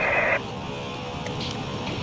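HF radio static hissing from the cockpit speaker, its sound squeezed into a narrow telephone-like band. It cuts off suddenly about a third of a second in, leaving a steady, fainter cockpit hum. The radio is receiving a weak, noisy signal, reported as readability two.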